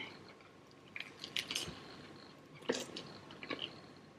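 A person chewing a mouthful of egg sandwich on sourdough bread. The mouth sounds are quiet, with a few brief crunchy clicks about a second in and again around three seconds in.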